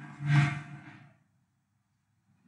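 A man's short vocal sound in the first second, then silence.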